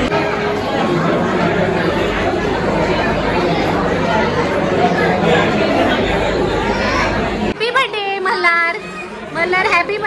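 Many people chattering at once in a large hall, with no single voice standing out. About seven and a half seconds in, the babble cuts off and a few closer, clearer voices take over.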